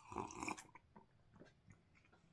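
A person taking a sip from a mug, a short slurp lasting about half a second at the start, followed by a few faint small ticks.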